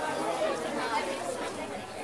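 Low chatter of several audience members talking at once in a room, no single voice standing out.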